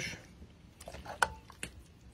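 Metal ladle scooping goulash out of a metal pot and pouring it into a bowl: soft wet plops and a few light clinks, the sharpest a little past a second in, with a brief ring.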